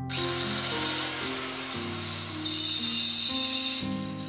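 A power tool runs for nearly four seconds over background music. It starts suddenly with a high whine that climbs and then slowly sinks, and turns harsher and more shrill in the last second and a half, as when it bites into material being cut.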